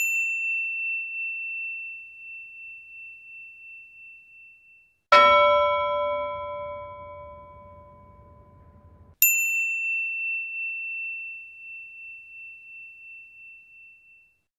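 Three struck bell-like chimes, each ringing out and fading: a high, pure ding, then about five seconds in a lower bell tone with several overtones that is cut off after about four seconds, then the high ding again. The high tones waver in loudness as they fade.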